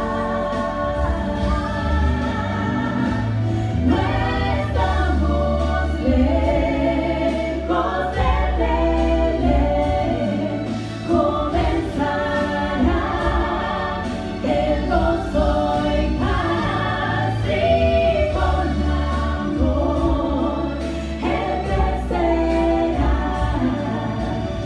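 Female vocal trio singing in harmony through microphones, over instrumental accompaniment with sustained low bass notes.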